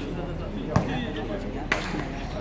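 A basketball bouncing on an outdoor hard court as it is dribbled: two sharp bounces about a second apart.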